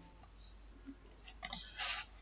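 A few faint, scattered clicks of a computer mouse and keyboard as text is selected and copied and the screen switched.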